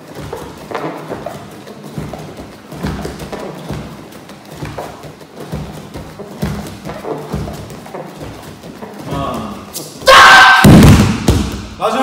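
Repeated judo throw entries (morote seoi nage uchikomi) on a mat: bare feet stepping and gi cloth rustling, with a low thump about once a second, over background music. Near the end comes a much louder burst with a voice in it, as the drill stops and the partner ends up on the mat.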